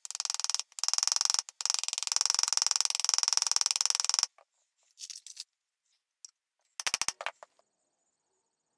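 Ball-peen hammer tapping rapidly on the steel pin end and washer through a mezzaluna's wooden handle, peening the pin over to fix the handle: about four seconds of fast metal-on-metal taps with two brief breaks, then two short bursts of taps near the end.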